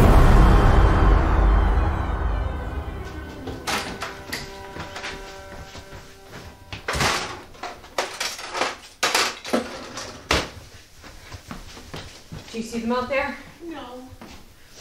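A music sting dies away over the first few seconds. Then a wooden kitchen drawer is rummaged through, with sharp knocks and clatters of the things inside, the loudest a few seconds apart. Near the end there is a brief sound of a voice.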